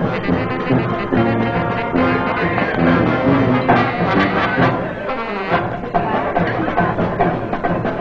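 Band music with brass instruments playing a dance tune.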